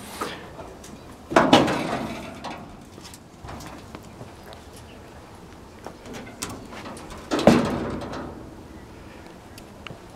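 Rusty steel door of a 1946 Chevy pickup cab pulled open by hand, a rough scraping noise about seven and a half seconds in. A similar rough noise comes about a second and a half in.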